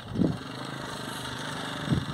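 Diesel locomotive of a Belgrano Norte passenger train idling in the station, a steady low hum, as the train waits to depart. A short soft sound comes just after the start and another just before the end.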